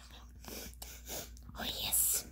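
A person whispering softly: short, breathy, toneless bursts of voice.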